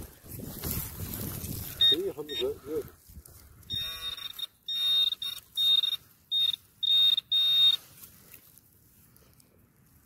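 Garrett Pro Pointer pinpointer sounding off in a run of about seven short, buzzy beeps over a few seconds as it is held over a metal target in the dug hole. Its alarm signals metal close to the probe tip.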